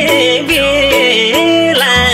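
Nepali song with a singing voice carrying a melody of sliding, bending notes over instrumental backing and a low bass line.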